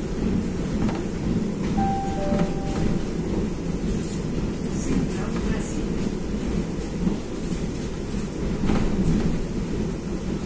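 Suburban electric commuter train running on the rails, a steady low rumble with scattered clicks from the wheels. About two seconds in, a short two-note tone steps down in pitch.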